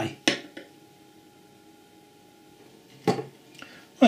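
Quiet room tone with a sharp click shortly after the start and a short knock about three seconds in, followed by a smaller one.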